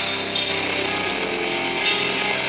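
Live heavy metal band: electric guitar holding sustained notes over the drum kit, with two cymbal hits about a second and a half apart.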